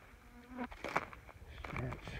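Bush fly buzzing close to the microphone, with a few short crunches, the loudest about a second in.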